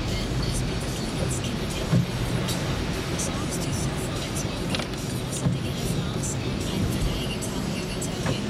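Cabin noise of a car driving on a wet road: steady engine and tyre noise, with brief peaks about two seconds in and again near the middle.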